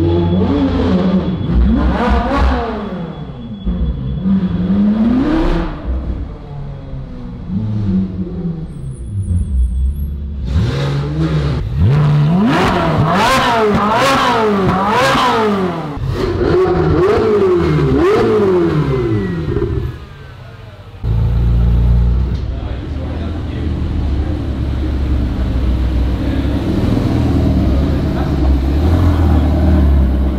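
Supercar engines revving again and again in an underground car park, their pitch rising and falling, with the busiest run of revs in the middle. After a short drop, a deep steady low engine rumble follows.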